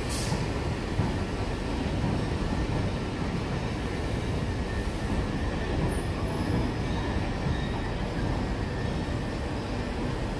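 Southeastern electric multiple unit moving slowly along the platform, a steady rumble of wheels on the rails with faint high wheel squeal. A brief sharp click comes right at the start.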